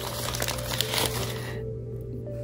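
Crumpled packing paper crinkling as a small glass piece is dug out and unwrapped from it by hand, the crinkling dying away about one and a half seconds in.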